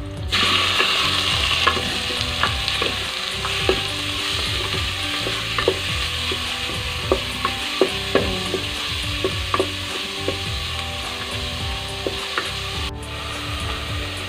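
Chopped chicken dropped into hot oil in a metal pot with onion and garlic, starting a sudden steady sizzle as it sautés. A wooden spatula stirs it, knocking and scraping against the pot now and then.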